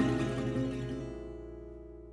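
The swing band's final chord rings out on acoustic guitars and dies away steadily.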